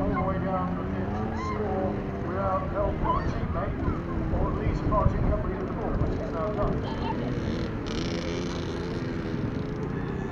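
Young children's voices calling and chattering, high-pitched and on and off, over a steady low rumble. A short hiss comes about eight seconds in.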